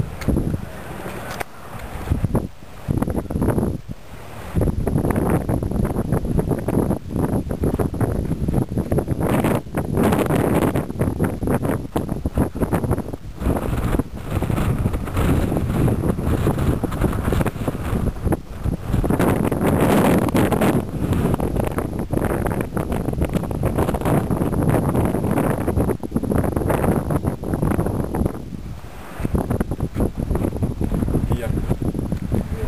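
Gusty wind blowing across the camera's microphone: a loud, uneven rush, heaviest in the low range, easing off briefly in the first few seconds and again near the end.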